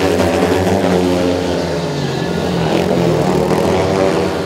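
Two speedway motorcycles' 500 cc single-cylinder engines running hard on the last lap, loud and steady. Their pitch dips about halfway through, then climbs again near the end.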